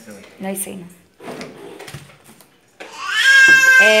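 A young child's long, high-pitched vocal squeal, starting about three seconds in, held at nearly one pitch and sliding slightly down.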